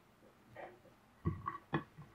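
Quiet handling sounds from cheese slices being picked off a ceramic plate and laid on pizza dough on a wooden board: about four short taps and light clicks, the sharpest in the second half, some with a brief ring.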